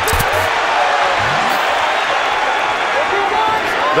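Arena crowd noise: a steady roar of many voices through the whole stretch, with a single sharp thump right at the start.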